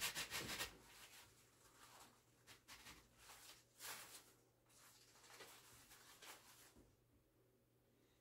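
Faint rustling and rubbing of a ribbon bow and artificial flower stems being handled and pushed into an arrangement, in short scattered bursts that are strongest in the first second and die away near the end.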